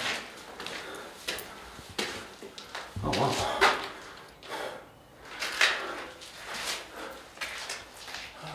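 Footsteps scuffing and scraping on a gritty stone floor: several irregular scrapes, the loudest about three and a half seconds in.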